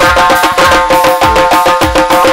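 Live Uzbek wedding-band music led by several doira frame drums beaten in a fast, dense rhythm over a steady low beat and held melody notes.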